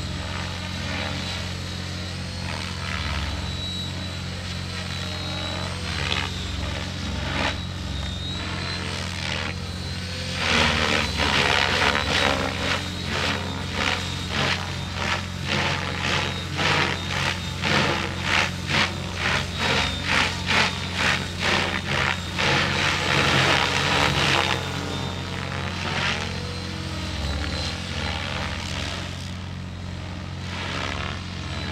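RC helicopter in flight: its rotor whooshes over a thin, steady high whine. From about a third of the way in to past the middle, it grows louder and surges in quick pulses, roughly twice a second, as the blades bite during hard aerobatic manoeuvres.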